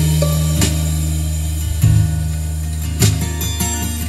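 Music with guitar over a deep, held bass line, played back through an Electro-Voice Evolve 50 column speaker array with subwoofer base as a sound test; fresh guitar notes strike about every second and a bit.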